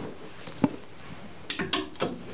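A clothes hanger knocking once, sharply, as a suit jacket is slipped off it, followed near the end by a few quieter clicks and cloth rustles as the hanger goes back on the rail.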